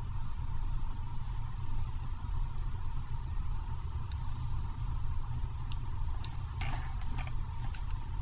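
Steady low hum and hiss of room tone picked up by the microphone, with a few faint clicks near the end.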